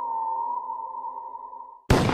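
Eerie synthesizer drone held on one high tone over quieter lower layers. It wavers slightly at first and fades away. A sudden loud burst of noise cuts in just before the end.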